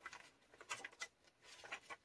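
Faint paper rustling with a few soft ticks as the pages of a handmade junk journal are turned by hand.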